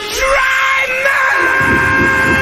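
Rock song's lead vocal holding one long sung note over the backing track, sliding up into it at the start, with low drum hits coming in about a second and a half in.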